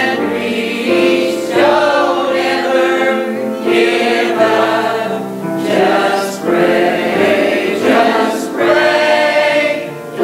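Mixed church choir of men and women singing a gospel song together, in held phrases with brief breaks between them every second or two.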